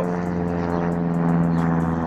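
Steady engine drone: a low pitched hum with many overtones, swelling a little in the middle.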